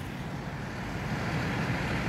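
Steady, even low rumble of parked trucks idling in the street, growing slightly louder toward the end.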